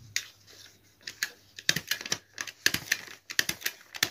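Paper dress pattern being folded, pressed and handled on a wooden table: a run of light, crisp clicks and paper rustles, more of them in the second half.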